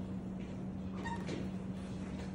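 A steady low hum with faint rustling as hands work fabric and tape on a canvas dress form, and a brief faint squeak about a second in.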